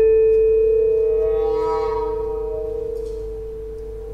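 A single mallet-struck metal percussion note ringing on and slowly fading, with a slight wobble in its tone. Fainter sustained higher notes from the ensemble swell in quietly around the middle.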